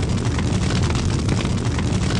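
Large fire burning: a steady, dense rush with a heavy low rumble and constant fine crackling.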